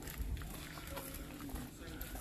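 Quiet footsteps on gravel, with a low rumble on the microphone.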